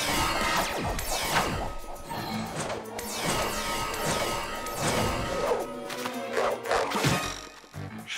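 Cartoon action soundtrack: music with flying sound effects, several falling whooshes and a few hits as a character swoops around with a hose. It quietens near the end.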